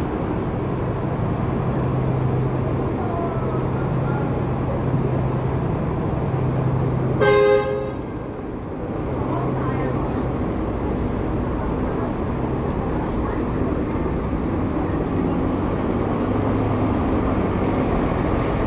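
Steady rumble of traffic and a running engine, broken by one short vehicle horn toot about seven seconds in.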